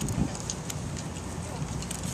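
Outdoor ambience: indistinct background voices over a steady low rumble, with a couple of soft low thumps just after the start.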